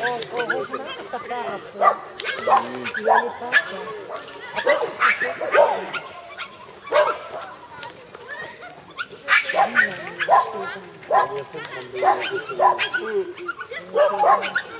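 A dog barking over and over, short barks coming about once or twice a second.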